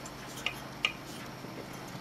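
Two faint, short clicks about half a second apart, over quiet room tone, as a tower CPU cooler with a plastic 120 mm fan is handled.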